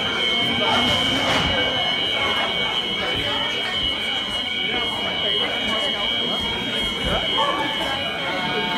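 Alarm sounding one continuous, steady high-pitched tone over a crowd of people talking and moving about in a hall.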